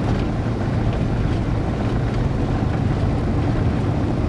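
Vehicle driving along a dirt track: steady engine and tyre rumble with wind buffeting the microphone.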